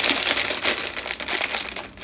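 Clear plastic bag full of toy building bricks being handled: the plastic crinkling, with the loose plastic bricks rattling inside.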